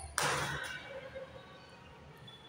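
A single sharp impact, a short knock or slap-like hit, about a fifth of a second in, dying away within about half a second.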